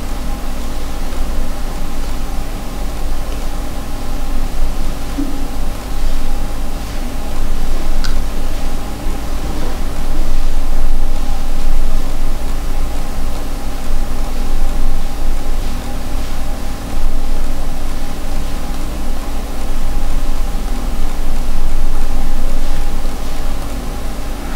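Steady background hum and hiss: a deep rumble with a few constant humming tones, its loudness swelling and falling a little.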